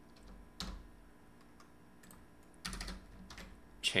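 Computer keyboard keys clicking in a few short clusters of keystrokes as code is typed, fairly faint.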